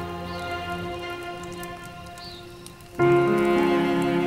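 Background score music with long held notes, fading and growing quieter over a soft hiss; about three seconds in, louder sustained string music comes in suddenly.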